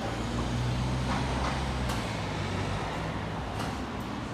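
Room noise of a busy shop: a low hum that swells about half a second in and eases off near the three-second mark, with a few light clicks.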